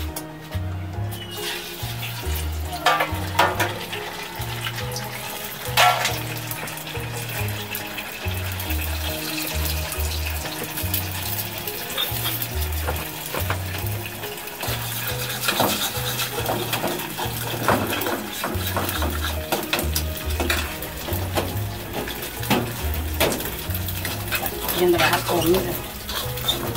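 Food sizzling in a pan and a metal utensil clinking and scraping against pots, over background music with a repeating bass line.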